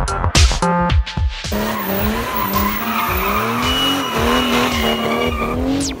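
Electronic music with a heavy beat for about the first second and a half, then a Mercedes-Benz C-Class saloon doing a burnout: the engine held at high revs, rising and dipping, over tyre squeal and skidding.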